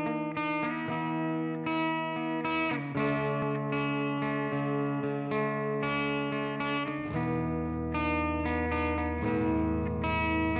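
Instrumental intro of an alternative rock song: electric guitar played through effects, picking a run of notes over ringing chords. Heavier low notes join about seven seconds in.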